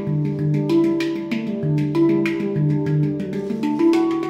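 Handpan played by hand: a quick, flowing run of struck steel notes, several a second, each note ringing on under the next.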